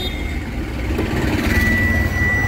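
Tata 916 bus's 3.3-litre four-cylinder BS6 diesel engine starting up, a low rumble that builds and keeps running. About a second and a half in, a steady high-pitched warning tone begins and holds.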